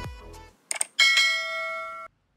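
Background music stops about half a second in. Then comes a short mouse-click sound and a bright bell chime that rings steadily for about a second before cutting off sharply: a subscribe-button animation sound effect.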